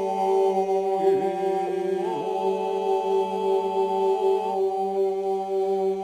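Male folk group singing Albanian iso-polyphony a cappella. The group holds a steady low drone (iso) while the leading voices sustain long notes above it, moving to new pitches about one and two seconds in.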